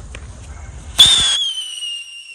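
Hand-held firework rocket: its fuse hisses faintly, then about a second in it launches with a sudden loud burst and a whistle that slowly falls in pitch as it flies away.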